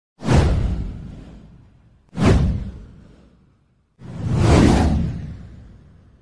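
Three whoosh sound effects for an animated title card, each swelling up and dying away over a second or two. The third builds more slowly than the first two.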